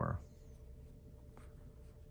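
Faint scratchy rubbing of yarn over knitting needles, with a light click or two, as a stitch is worked.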